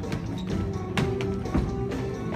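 Instrumental accompaniment music for a children's stage musical, without singing, with a few sharp taps over it.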